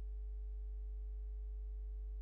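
Steady electrical hum in a pause between words: a strong, deep, constant tone with several fainter steady tones above it, unchanging throughout.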